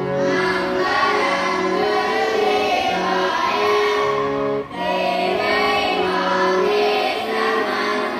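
A devotional suprabhatam hymn sung with instrumental accompaniment: voices holding long notes over steady tones, with a brief break about halfway through.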